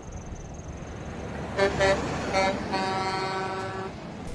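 Truck horn over passing highway traffic noise: three short toots, then one long steady blast near the end.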